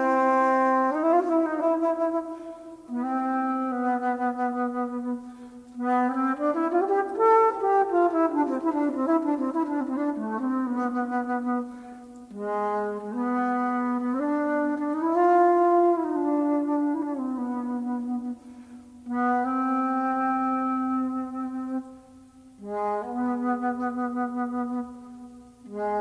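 Solo jazz flute played in a low register, in phrases of held notes that bend and slide between pitches, broken by short breaths. About a third of the way in, two pitch lines cross, as if two notes sound at once.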